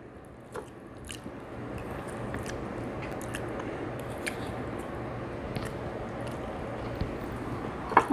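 Close-miked chewing of a mouthful of soft homemade enchilada: a steady, wet mouth noise with small clicks scattered through it.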